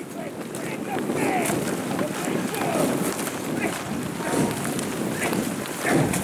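Several voices shouting to a rowing crew as it passes, short calls overlapping one another, over a steady rushing noise.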